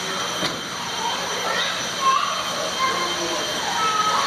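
Busy indoor exhibit ambience: a steady rushing noise with distant voices, and a few short high squeaks from about two seconds in.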